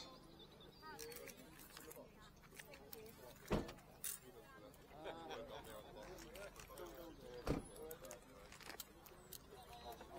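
Indistinct voices of people talking nearby, with small clinks of metal jewellery chains being handled. Two sharp knocks stand out, about four seconds apart.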